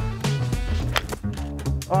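Background music with a steady bass line; about a second in, a single sharp crack of a golf iron striking the ball off the tee.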